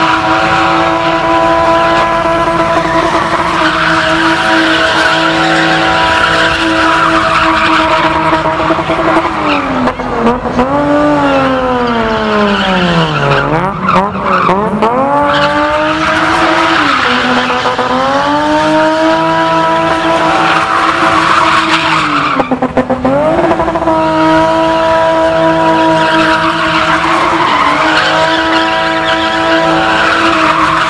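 BMW E30 spinning: its engine held steady at high revs while the rear tyres spin and screech on the tarmac. The revs drop and climb back several times, most deeply about halfway through, then again a little later, before settling back high.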